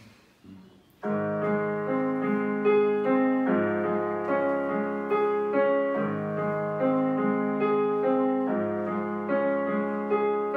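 Digital piano playing a slow introduction to a song, starting about a second in, with held chords and a melody over a bass note that changes every couple of seconds.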